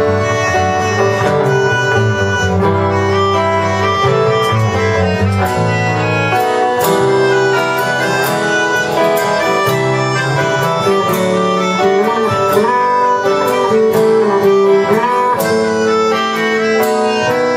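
A live band playing an instrumental passage: electric bass and drums with steady cymbal strokes, under a melody of long held notes.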